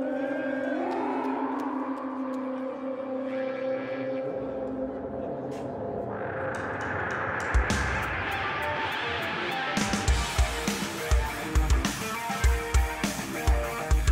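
Live rock band opening a song: effects-laden electric guitar holding long sustained notes that swell up about six seconds in, a single drum hit a little later, then the drum kit entering about ten seconds in with a steady beat.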